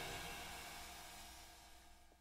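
The last chord of a song ringing out and fading away, down to near silence about one and a half seconds in.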